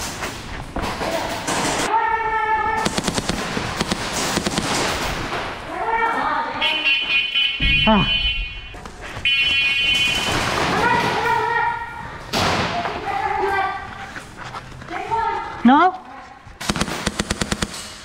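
Airsoft guns firing rapid strings of shots in several bursts, the longest near the end, mixed with shouting voices.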